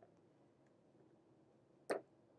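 Near silence: quiet room tone, broken by one brief, sharp little sound just before the end.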